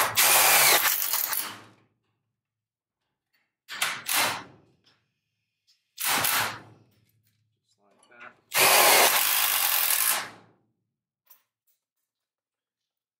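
Makita cordless impact driver running in four short bursts, driving self-tapping screws through a slide lock into a steel garage door panel; the last burst is the longest.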